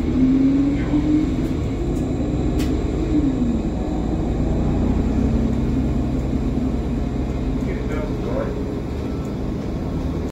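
Inside a moving city bus: the engine and drivetrain run with a steady low rumble, under a humming tone that climbs at the start and drops about three seconds in as the bus picks up speed.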